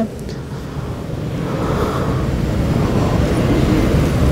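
A low rumbling background noise that slowly grows louder.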